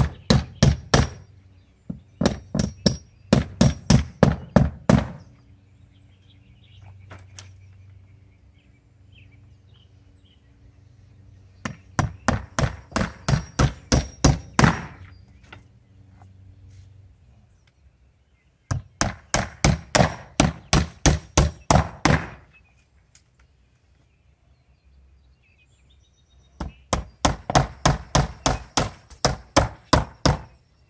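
Hammer driving nails by hand into cedar bevel siding: runs of quick, sharp strikes, about four a second, each run lasting a few seconds, with pauses of several seconds between runs.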